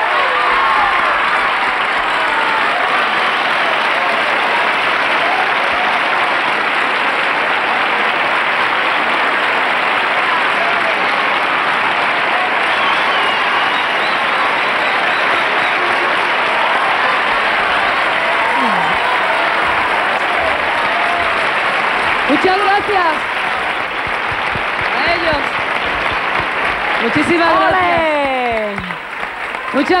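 A large studio audience applauding steadily. In the last several seconds a few voices call out over the clapping.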